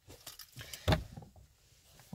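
Faint scuffs and rustles of a handheld phone being moved about close to the face and clothing, with one short, louder scuff about a second in.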